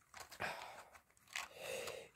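Fingers pulling plastic floss bobbins out of the compartments of a clear plastic storage box: faint plastic scraping and rustling in two short bouts.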